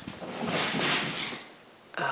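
Camera handling noise as the camera is moved quickly: a soft rushing sound that swells and fades over about a second.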